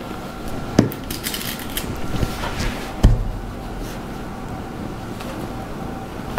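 Handling sounds of cotton fabric being pinned with straight pins on a cutting mat: light rustling and small clicks, with a dull knock about three seconds in, over a faint steady hum.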